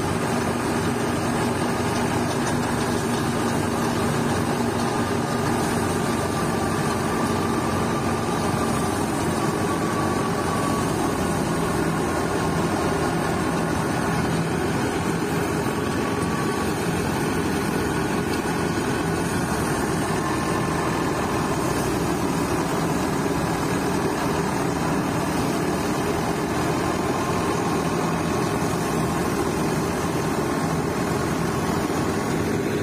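Tractor-driven wheat thresher running steadily, the tractor engine working under load and the threshing drum and fan churning as sheaves of wheat are fed in.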